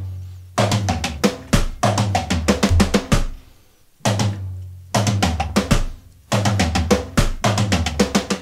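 Electronic drum kit played through its module's "Grunge" preset: two phrases of fast drum strokes with bass drum, each opened by a heavy accented hit, with a short pause just after three seconds. The strokes are a fill worked out of rudiments such as paradiddles.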